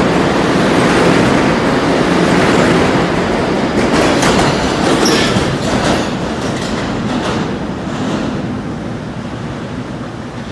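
R211 New York City subway train pulling out at speed: a loud rumble of steel wheels on the rails with clattering over the rail joints and a brief high wheel squeal about five seconds in. The sound then fades steadily as the train recedes into the tunnel.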